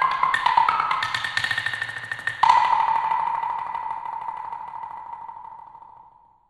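Set of homemade wooden blocks struck with sticks in fast, dense patterns across several pitches. About two and a half seconds in, a loud accent is followed by rapid strokes on one block that die away to nothing.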